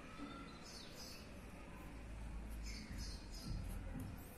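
Birds chirping faintly in the background, a few short chirps at a time, over a low steady hum, with the light scratch of a pen drawing short lines on paper.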